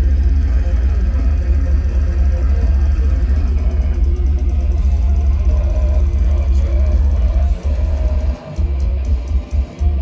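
Death metal band playing live: heavily distorted electric guitar and drum kit in a dense, loud wall of sound with a heavy low end, and no bass guitar in the line-up. The playing breaks off for a few brief stops in the last few seconds.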